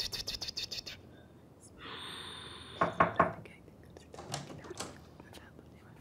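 A woman whispering a charm in a hushed, breathy voice. A fast run of rattling clicks fills the first second, and a few sharper clicks and taps come later.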